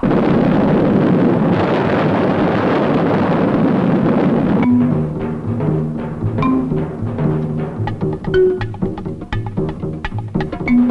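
Percussion music. For about four and a half seconds there is a loud, dense, continuous roll. Then it changes suddenly to a fast, uneven rhythm of short, pitched drum strikes and knocks.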